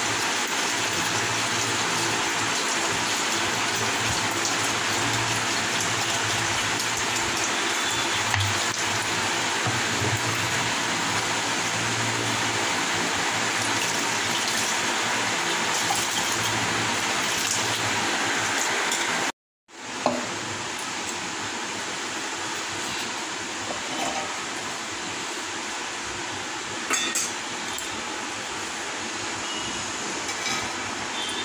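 Water pouring and splashing over raw rice in a steel pot as the rice is rinsed by hand, heard as a steady hiss. After an abrupt cut about two-thirds in, the noise is a little quieter, with a few light clinks near the end.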